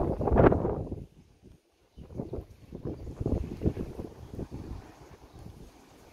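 A gust of wind buffeting the microphone, then a run of short soft scrapes and rubs as fingers clean dirt off a small coin.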